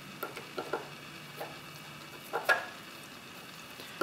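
Small screwdriver turning a screw in the metal case of a Sargent & Greenleaf mailbox lock: faint scraping with a few light metal clicks, the loudest about two and a half seconds in.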